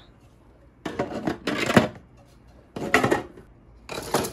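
3D-printed plastic pieces knocking and scraping as they are packed into a clear plastic storage box full of other prints: three bursts of clatter, the first lasting about a second, a short one about three seconds in, and another near the end.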